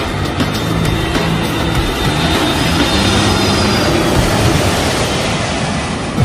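Steady jet-engine noise from an Airbus A320-family twin-jet airliner on final approach to land, with music playing under it.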